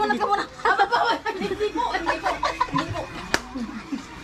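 People talking and laughing together, with one sharp click a little over three seconds in.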